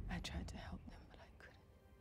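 Tense film score fading out, followed by a few faint whispered voice sounds that stop about one and a half seconds in, leaving near silence.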